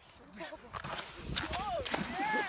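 Young people whooping and laughing, with a splash near the end as a rider on a bodyboard hits shallow water.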